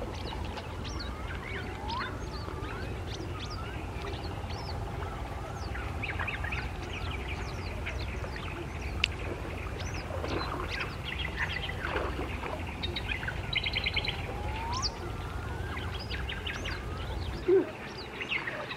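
Several birds chirping and whistling in overlapping short rising and falling calls, with a rapid trill about two-thirds of the way through. A steady low rumble runs underneath and drops away near the end.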